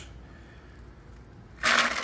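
A plastic ice scoop digging into a basket of loose, bullet-shaped ice-maker ice cubes, with a sudden loud clattering rattle of cubes starting near the end after a quiet stretch.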